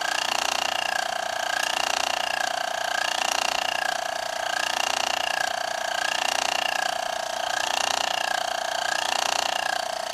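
Small flywheel-less laminar-flow Stirling engine with a free aluminium piston running, making a steady buzzing rattle whose pitch rises and falls gently about once a second.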